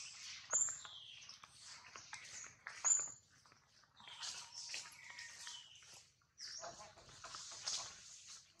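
Macaques making short, high-pitched squeaks and chirps, several of them gliding downward, mixed with scattered light clicks and rustles.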